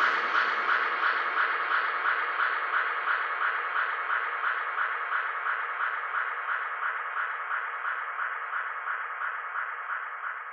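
Outro of a dubstep track: an electronic synth pulse repeating quickly and evenly in the middle range, with the bass and drums gone, fading out slowly.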